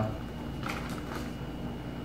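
Quiet room with a steady low hum and two faint, brief rustles of a paper envelope being handled, about a second apart.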